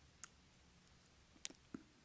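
Near silence with three faint, short clicks: one near the start and two close together about one and a half seconds in.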